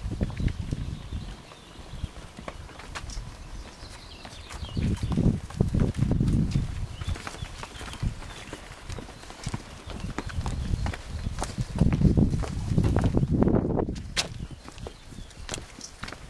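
Wind buffeting a handheld camera's microphone in irregular low rumbling gusts, strongest about five seconds in and again past the middle, with scattered sharp clicks and knocks from handling and steps on stone.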